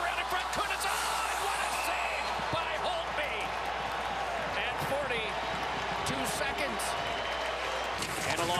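Ice hockey arena ambience: steady crowd noise with scattered voices, and a few sharp knocks of sticks and puck on the ice.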